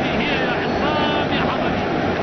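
Football stadium crowd noise: a steady roar of many voices, with individual shouts and calls rising above it.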